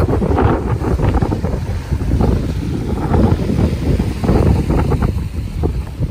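Strong wind buffeting the microphone in gusts, over the rush of water and waves around a small sailboat under way.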